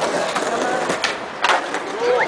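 Skateboards rolling on stone paving, with three sharp clacks of boards striking the ground: one near the start, one about a second in, and the loudest about a second and a half in.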